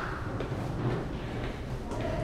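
Quiet indoor background noise with faint footsteps on wooden stairs.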